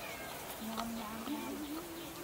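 A single drawn-out, wavering vocal call: it holds one low pitch for about a second, then rises and wavers higher near the end, over faint background noise with a few light clicks.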